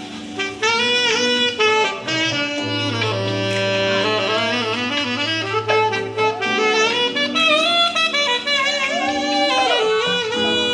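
Live saxophone solo, the horn playing quick runs and bending notes over an accompaniment with a low bass line.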